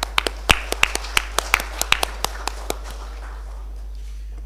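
A quick, irregular run of about fifteen sharp clicks that dies out a little under three seconds in, over a steady low hum.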